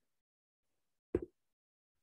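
A single short knock or tap a little over a second in, in otherwise near silence.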